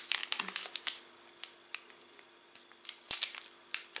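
Thick foil tea sachet crinkling and crackling as it is handled and turned over in the hands: irregular sharp crinkles, with a cluster near the start and another about three seconds in.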